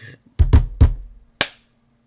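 A 'ba-dum-tss' rimshot sound effect, the drum sting that punctuates a joke: three quick drum hits, then a cymbal crash about a second and a half in.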